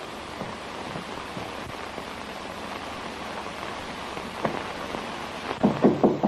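Steady hiss of an old 1930s film soundtrack with a few faint clicks. Just before the end comes a short cluster of knocks.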